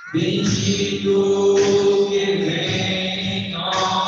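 Sung liturgical chant: a voice holding long, steady notes, as in a sung part of the Mass.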